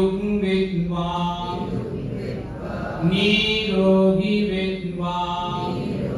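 Slow Buddhist chanting: a voice draws out two long, held phrases, the second starting about three seconds in.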